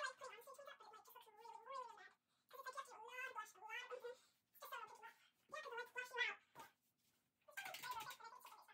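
A high-pitched, wavering voice-like sound in short phrases broken by brief pauses, with no clear words.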